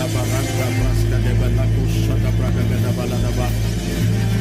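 Soft worship music of sustained, steady low chords, with a man's voice over it, praying aloud through a microphone in bursts of speaking in tongues rather than in clear words.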